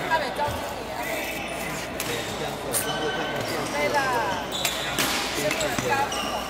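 Badminton rally in a large hall: several sharp racket hits on the shuttlecock, and shoes squeaking briefly on the court floor near the middle, over background chatter.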